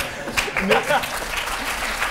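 Studio audience applauding, with laughter and snatches of voices over it in the first second.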